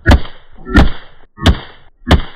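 Three quick .22 LR pistol shots, about two-thirds of a second apart, fired with CCI Segmented Hollow Point rounds. Each sharp crack trails off in a short ringing echo.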